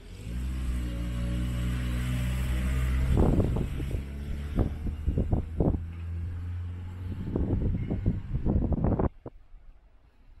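A motor vehicle's engine running close by with a steady low hum, joined from about three seconds in by irregular thumps. It cuts off suddenly about a second before the end.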